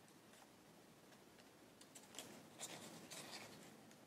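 Faint crisp rustling and crackling of stiff folded paper as hands handle and press an origami pram model, in a few short bursts over the second half.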